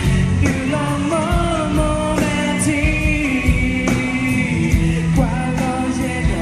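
A man sings a Karen-language pop-rock song into a microphone over a rock band, with electric guitar and a steady drum beat, heard through a phone recording from the audience.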